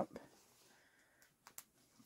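Faint handling of a doll's cotton overalls: a few soft clicks, two close together about one and a half seconds in, as metal snap fasteners are done up.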